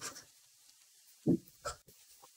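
A pause that is mostly quiet, with two short faint vocal sounds from a man a little after a second in, followed by a soft click.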